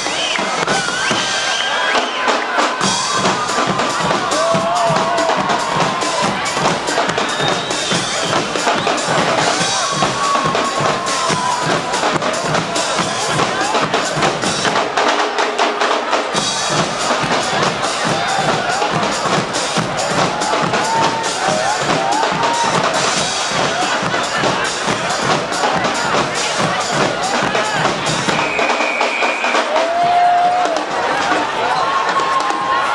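Guggenmusik band playing loudly on brass and percussion: trumpets and trombones over bass drums, snares and cymbals with a steady beat. The bass drops out briefly three times, about two seconds in, near the middle and near the end.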